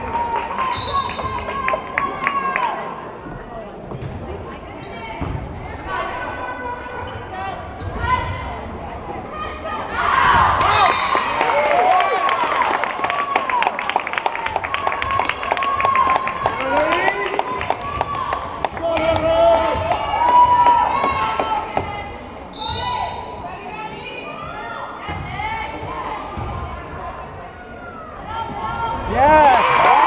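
Indoor volleyball rally on a hardwood gym court: sneakers squeaking, the ball being struck, and players and spectators calling out, with a stretch of rapid clapping in the middle. Cheering rises near the end as the rally finishes.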